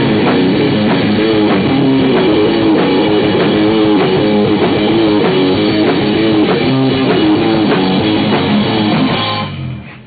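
Live rock band playing: electric guitars and a drum kit over a steady beat, the song ending near the end with the music cutting off.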